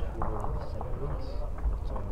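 Indistinct, low voices murmuring over a steady low rumble of an indoor bowling hall.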